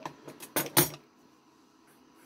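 Scissors cutting linen cloth: a few short, crisp snips and clicks in the first second, then quiet.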